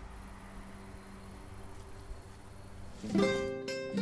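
A low steady outdoor rumble with a faint hum, then, about three seconds in, plucked acoustic guitar music starts and becomes the loudest sound.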